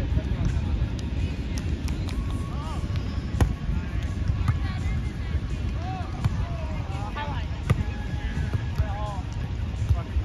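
Beach volleyball rally: a volleyball smacking off players' forearms and hands, twice sharply, with short calls from players' voices over a steady low rumble.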